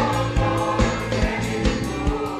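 Church choir singing a gospel worship song with band accompaniment, drums keeping a steady beat of a little over two hits a second.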